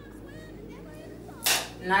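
Quiet background music, cut by a short, sharp swish about one and a half seconds in, just before a word is spoken.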